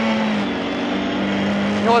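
Lada 21074 rally car's four-cylinder engine, heard from inside the cabin, running hard at steady high revs under load. Its pitch dips briefly about half a second in, then holds.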